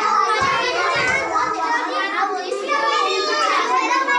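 A crowd of schoolchildren's voices shouting and chattering all at once during a group ball game.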